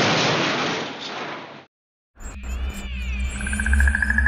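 Cartoon crash sound effects for a bicycle smashing into a pole: a loud noisy crash that fades out over about a second and a half. After a brief silence comes a low rumble with wavering whistle tones and a fast trill.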